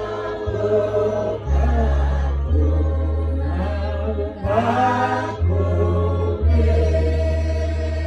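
Voices singing a slow hymn or chant over held low bass notes that change about once a second.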